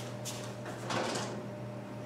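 Faint handling sounds at a kitchen stove as a baked pizza on a stone tray is fetched: a soft sliding scrape about a second in, with lighter ones around it. A steady low hum runs underneath.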